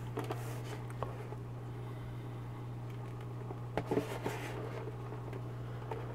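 Sunsun JP-032F internal aquarium filter pump running with a steady low hum. A few faint clicks come about four seconds in.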